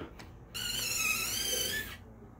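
A high, wavering squeak lasting a little over a second as the sorter's door is closed by hand.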